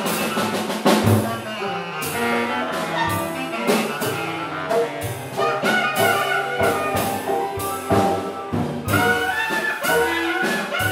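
A small jazz band playing a blues: alto clarinet and baritone saxophone over piano, banjo, upright bass and drums, with cymbal and drum strikes keeping a steady beat.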